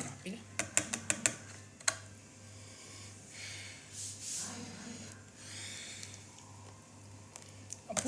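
Plastic screw cap of a fabric softener bottle clicking as it is twisted off, a quick run of sharp clicks, followed by a few short breathy sniffs as the softener's scent is smelled.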